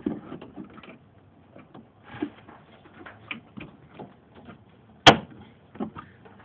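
Hands working the white plastic retaining clip on a Ram truck's headlight assembly: light plastic clicks and rubbing, then one loud, sharp snap about five seconds in as the clip is lifted.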